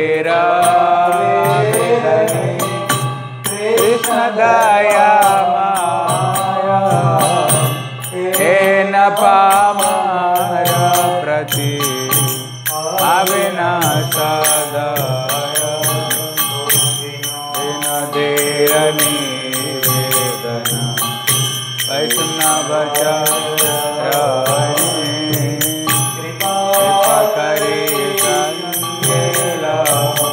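Devotional chanting of a mantra sung as a melody over a steady low drone, with fast metallic percussion keeping time throughout.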